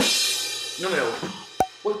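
Cymbal crash closing a drum roll, ringing out and slowly fading. A sharp click comes about one and a half seconds in.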